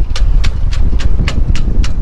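Strong wind buffeting the microphone, a loud, continuous low rumble, with a regular ticking of about four clicks a second over it.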